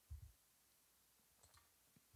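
Near silence with a few faint computer keyboard keystrokes at the start and one faint click a little after the middle.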